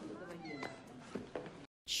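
A cat meowing faintly in a film soundtrack, cutting off suddenly near the end.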